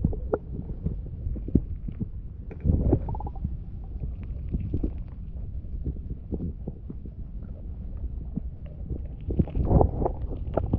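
Muffled low underwater rumble from a submerged camera, with scattered clicks and knocks, a louder bump about three seconds in and a burst of knocks near the end.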